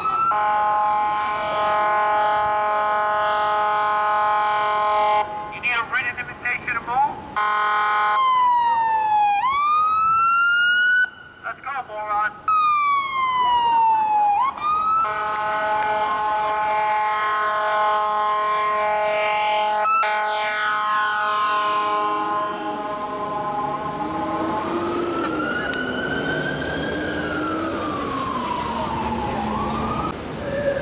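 An FDNY emergency vehicle's siren and air horn. Long, steady air horn blasts, one in the first five seconds and a longer one through the middle, alternate with the siren sweeping up and down in pitch. Near the end the siren makes a slower rise and fall.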